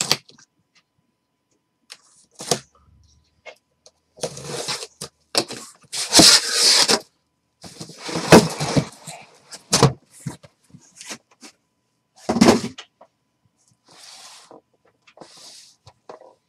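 A taped cardboard shipping case being cut open and unpacked: irregular scraping, rustling and knocking of cardboard. The loudest is a long scrape about six seconds in, with sharp knocks near ten and twelve seconds and softer rustles near the end.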